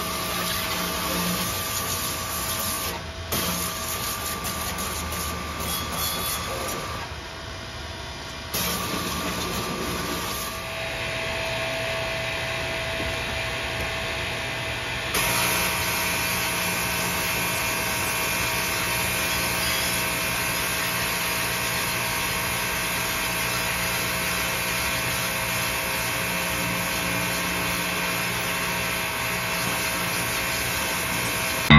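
Pressure washer running steadily, its spray hissing against the painted steel bodywork and engine of an antique fire truck. The sound briefly drops off about seven seconds in, then comes back, and grows a little louder and fuller after about fifteen seconds as the spray works the engine compartment up close.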